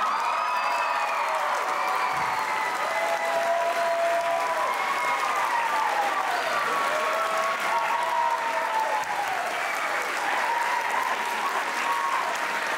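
Audience applauding steadily, with several voices cheering and whooping over the clapping.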